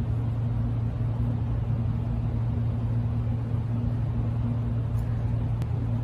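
Steady low hum over a deep rumble: constant machine-like background noise that does not change.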